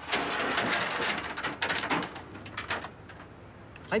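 A rolling metal security grille on a shopfront rattles and clanks as it is hauled along its tracks. It stops about three seconds in.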